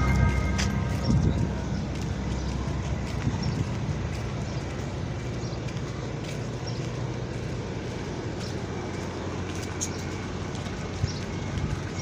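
Steady low rumble of truck engines running among parked lorries, with a few light clicks scattered through it.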